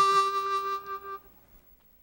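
Harmonica playing one long held note that fades out a little after a second in.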